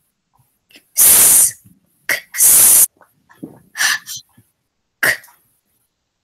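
A girl reciting isolated phonogram sounds one at a time: two long hissed sounds about a second and two and a half seconds in, with short clipped consonant sounds between and after them.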